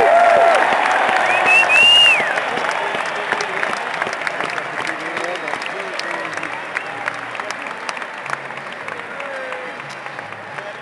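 Ballpark crowd cheering and clapping, loudest at first with shrill cries over the top about two seconds in, then the applause slowly dies away.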